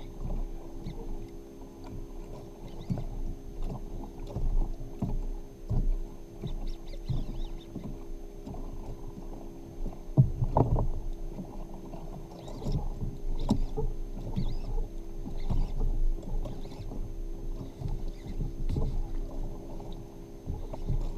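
Muffled knocks, bumps and water slapping against a fishing kayak's hull while a fish is fought and reeled in, with irregular small knocks and the loudest thump about ten seconds in. A faint steady hum runs underneath.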